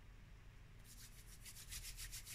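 Faint, quick rhythmic rubbing of fingers over paper, about seven strokes a second, starting about a second in: hands smoothing down freshly glued die-cut paper pieces on a card.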